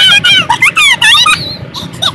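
Very high-pitched, voice-like sounds in short gliding syllables, over the low steady rumble of a car cabin; the syllables stop about a second and a half in.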